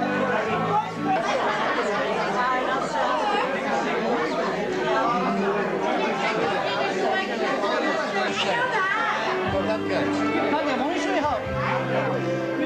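Many people talking over each other in a hall, with background music playing; the music's held notes come through more clearly near the end.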